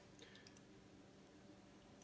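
Near silence: room tone, with a few faint clicks near the start.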